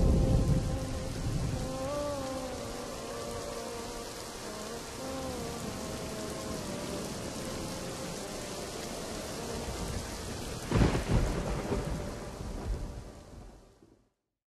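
Steady rain with thunder: a rumble right at the start and a louder crack and roll about eleven seconds in, then fading out near the end.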